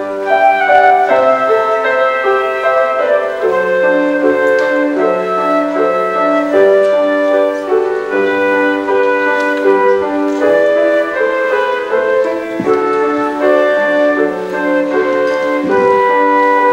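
A flute plays a melody over grand piano accompaniment: a Polish Christmas carol (kolęda) arranged for flute and piano.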